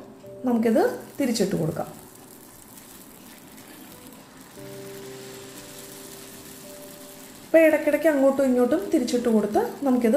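Batter-coated papadam deep-frying in hot oil in a cast iron kadai: a steady sizzle, heard plainly in the pause between words, with soft held music notes joining about halfway through.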